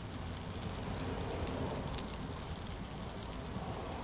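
Wood fire with a sheet of magnesium printing plate burning in it: a steady hiss with one sharp crackle about halfway through.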